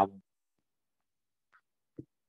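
A person's voice over a video call, ending just after the start, then near silence with a faint click near the end.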